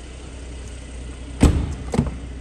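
A car door on a Mercedes-AMG C43 estate shuts with one loud thump about one and a half seconds in, followed by a short click near the end as the next door's handle is taken. A steady low hum runs underneath.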